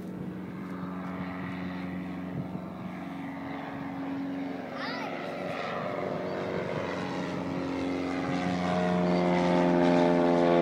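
1946 Piper Cub's small piston engine and propeller drone as the plane flies low toward the listener and overhead, growing steadily louder and loudest near the end.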